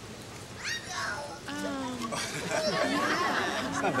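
People's voices reacting: high-pitched gliding exclamations about half a second in and again near two seconds, then overlapping chatter.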